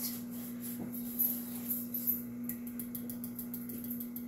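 Steady low hum of an electric ice cream maker running as it churns, with faint scraping of a spoon stirring thick cake batter in a pot.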